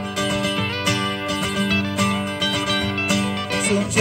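Acoustic guitars strummed together in an instrumental gap between sung lines; a voice comes back in singing just before the end.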